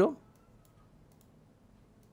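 Faint clicks of a computer mouse, several spread over a quiet stretch, as the left button is pressed repeatedly.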